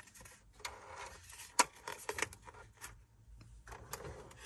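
Handling noise as 4x6 thermal label stock is loaded into a Bixolon desktop thermal label printer: faint paper rustling and a few sharp light clicks from the printer's plastic parts.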